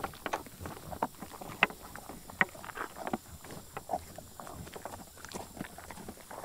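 American bison eating range cubes off a tabletop close to the microphone: irregular crunching and clicking as the cubes are picked up and chewed, with two louder cracks in the first half.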